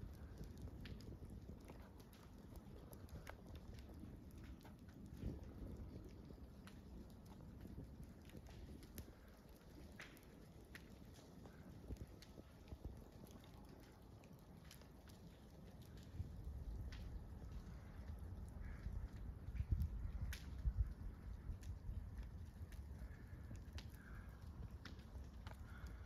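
Faint outdoor ambience: a low, uneven rumble with scattered light clicks and crackles, louder in the second half.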